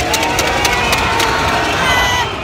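Football stadium crowd cheering and shouting, with sharp claps through the din, as a penalty is scored.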